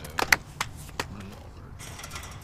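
A few short, sharp knocks in the first second, the loudest about a third of a second in, then a low steady background.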